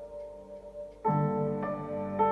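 Slow piano music: held notes fade away, then a new chord is struck about a second in, with the notes changing again shortly after.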